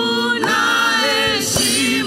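A small praise team singing a gospel worship song together into microphones, the voices held in long sustained notes.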